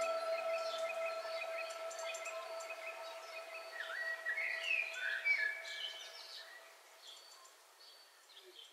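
The end of a lofi track fading out: held notes die away over the first few seconds while short bird chirps come in about halfway, then the sound dwindles to faint ambience.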